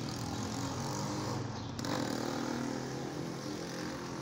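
A motor or engine running with a steady low drone, a little louder about two seconds in.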